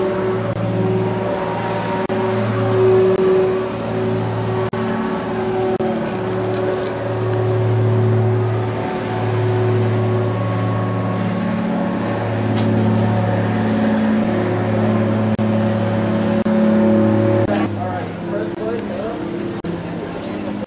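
Blimp engines droning overhead: a loud, steady low hum with a few held tones that shift in pitch now and then. The drone drops away a couple of seconds before the end.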